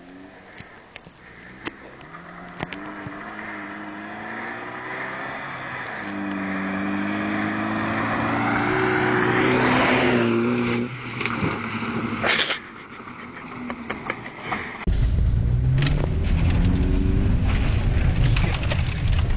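Volvo 740 accelerating hard up a gravel road toward the microphone, its engine note climbing in steps as it shifts up, loudest as it passes about ten seconds in, then dropping away. About fifteen seconds in, it cuts sharply to the engine and road noise heard loud and low from inside the cabin.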